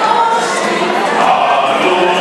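A small mixed choir of men's and women's voices singing together.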